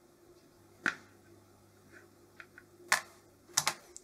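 Handling noise from test leads being let go of on a workbench: four sharp clicks, one about a second in, one near three seconds and a quick pair near the end, with fainter ticks between them. A faint steady hum runs underneath.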